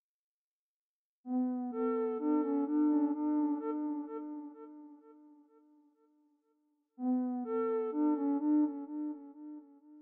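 Synthesized lead patch in the Vital soft synth playing a short melodic phrase of held, stepping notes twice. The first phrase trails off in a fading tail while a delay effect is being dialed in.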